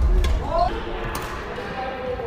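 Badminton rally on a wooden sports-hall floor: a sharp crack of a racket hitting the shuttlecock near the start, among heavy thudding footsteps as the player lunges and recovers.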